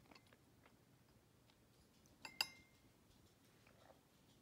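Near silence with faint small clicks, then a little over two seconds in a sharp clink with a brief ringing tone: a glass straw knocking against a ceramic coffee mug.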